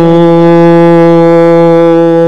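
A man's voice holding one long, steady sung note, part of a chanted devotional recitation.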